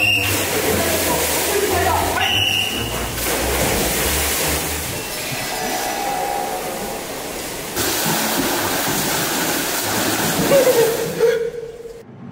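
Water splashing and churning in a swimming pool as a swimmer dives in and swims: a continuous rushing noise, softer for a few seconds mid-way and louder again after. A short voice sound comes near the end.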